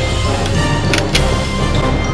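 Music with a steady beat and sustained tones.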